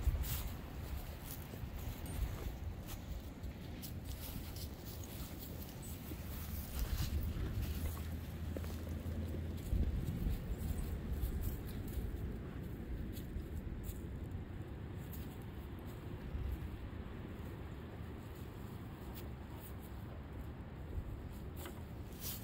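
Low wind rumble on the microphone, with faint rustling and footfalls in grass and dry fallen leaves.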